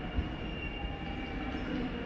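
Dutch NS double-deck electric train pulling away through the station, running with a steady low rumble, with a faint high wheel squeal that fades in the first second.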